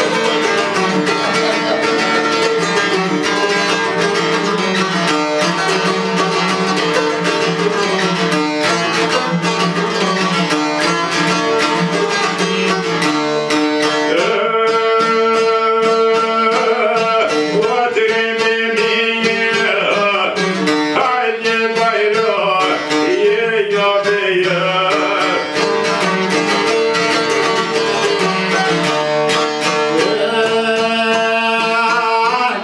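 Albanian folk music on plucked long-necked lutes, a çifteli and a sharki, playing a quick plucked melody over a steady drone note.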